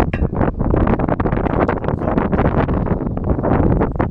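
Wind buffeting the camera microphone, a loud rumbling noise that flutters constantly.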